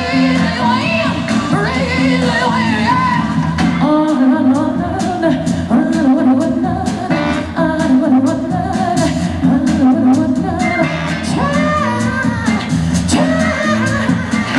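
Pop song with a sung lead vocal over a steady drum beat, played over the sound system of a large hall.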